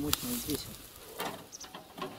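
A man's voice speaks briefly at the start, then faint outdoor background with light rustling.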